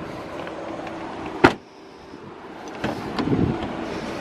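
A car door on an Audi A4 slammed shut with one sharp thud about a third of the way in. Near the end comes a stretch of rougher handling noise as the front door is worked.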